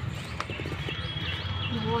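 Wind buffeting the microphone as a low, steady rumble, with a few footstep knocks on a paved path and some short high chirps; a woman's voice starts right at the end.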